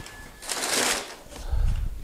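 Handling noise as steel rack brackets are set aside: a brief scraping rustle about half a second in, then a low thump near the end.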